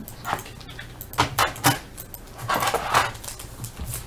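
Short rustles and clicks from a wax-paper card pack being handled, a few quick ones and then a longer crinkle about two and a half seconds in.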